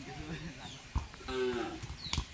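A football kicked barefoot on a dirt yard: one sharp knock about a second in. Around it come two short, low, pitched calls.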